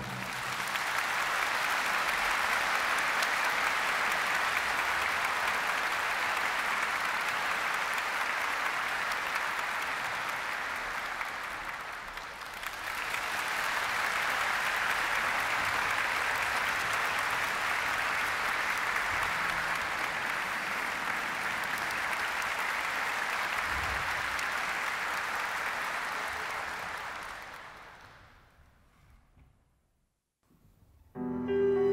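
Concert audience applauding, a steady clapping that dips briefly about twelve seconds in, resumes, and fades out near the end.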